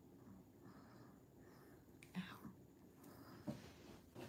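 Near silence: quiet room tone with brief faint whispering about two seconds in and again at about three and a half seconds.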